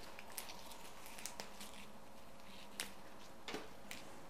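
Faint, scattered crackles and light clicks of chrysanthemum leaves being stripped by hand from their stems.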